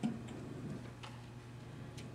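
Quiet room tone with a steady low hum and two faint ticks about a second apart.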